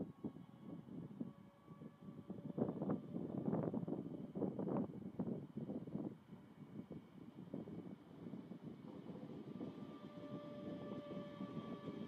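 A class 425 electric multiple unit pulling out of the station and approaching. Uneven low rumbling noise in the first half gives way to a steady electric whine from its traction equipment, which grows as the train nears.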